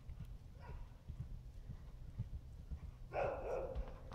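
An animal call with a wavering pitch, under a second long, near the end, after a fainter falling call about half a second in; a low rumble runs underneath.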